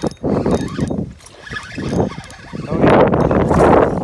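Hooked largemouth bass thrashing and splashing at the water's surface near the bank, in irregular bursts, loudest in about the last second as it shakes free of the hook.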